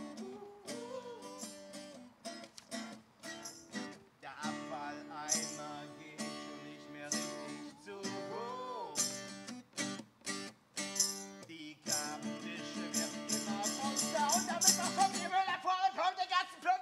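Unamplified acoustic guitar strummed and plucked, with a singing voice, in a live song. The strumming grows busier and louder in the last few seconds.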